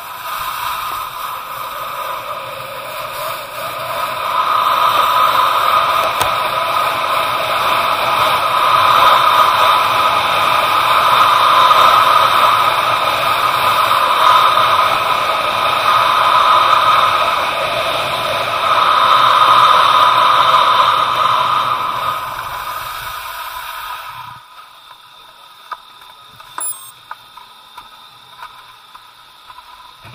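Steady, loud scraping hiss of a rider sliding down the snow of an indoor ski slope, heard through an action camera's housing. It swells through the middle of the run and drops away suddenly about four-fifths of the way in as the rider slows to a stop, leaving only a few faint clicks.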